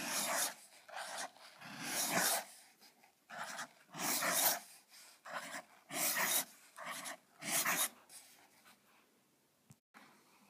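Broad nib of a Montblanc 234½ fountain pen scratching across paper in about a dozen short, irregular strokes as letters are written, stopping about two seconds before the end.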